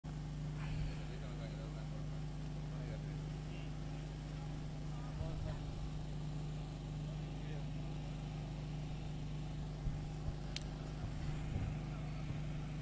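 Faint open-ground ambience: a steady low hum under distant voices of players calling. A sharp click comes near the end.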